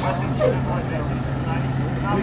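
Indistinct talking over the steady low hum of street traffic.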